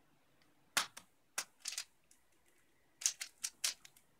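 3x3 speedcube being turned fast: sharp plastic clacks of its layers snapping round, in short quick clusters with brief pauses between.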